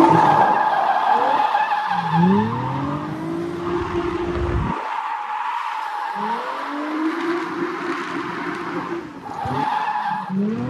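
A drifting car's VQ V6 engine revving hard while its rear tyres squeal in a sustained slide. The revs climb twice; the first climb cuts off sharply about halfway through, and a new climb starts near the end.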